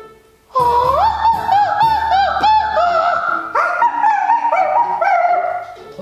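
Operatic soprano singing high, quick looping runs and trills, with a short break about half a second in.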